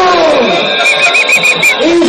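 A high quavering call, about a second in, over the voices of a marching crowd.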